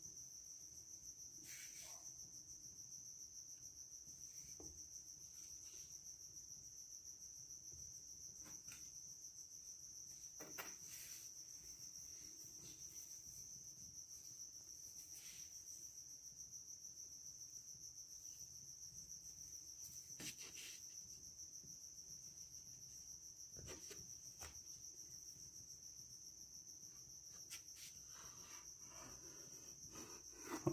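Near silence with a faint, steady high-pitched cricket trill, and a few faint taps of a kitchen knife cutting through rolled dough onto a board.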